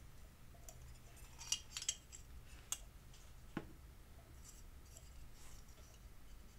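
Faint small clicks and taps of a hard plastic window piece against thin diecast metal as it is worked out of a toy car's body. A few clicks come close together in the first half, then one more a moment later.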